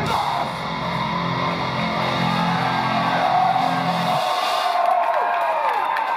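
Live metalcore band with distorted guitars holding a low, sustained chord that cuts off about four seconds in. After that, high guitar tones slide downward over the noise of the room.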